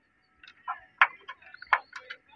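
Light, irregular clicks and ticks of multimeter test probe tips being pushed and tapped against the pins of a crankshaft position sensor connector.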